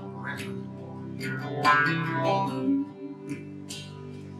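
Thin-bodied acoustic-electric guitar being played: picked chords ringing on between sung lines, with brighter notes about a second in.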